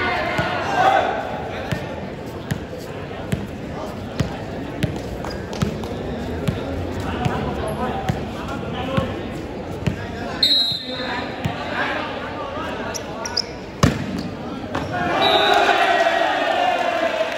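A volleyball bounced again and again on a hard concrete court, roughly one bounce a second, over crowd chatter. A single loud smack comes near the end, then players shouting.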